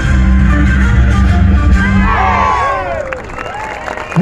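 Loud dance music with a heavy low beat that stops about two and a half seconds in. The crowd then breaks into cheers and whoops as the dance ends.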